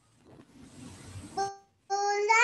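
A rushing noise over a video-call microphone, building for about a second and cutting off suddenly, then a short high-pitched child's voice sound just before the end.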